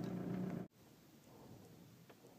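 Idling hum of a 1998 Volkswagen Beetle's four-cylinder turbodiesel, heard from inside the cabin. It cuts off abruptly well under a second in, leaving faint room tone.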